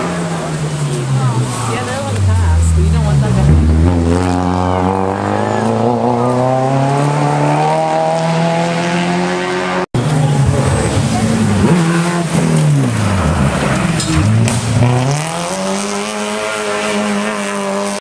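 1994 Subaru Impreza rally car's flat-four boxer engine running hard at high revs, its pitch dropping sharply and climbing again several times. The sound cuts out completely for an instant about ten seconds in, then comes back with more dips and rises in pitch.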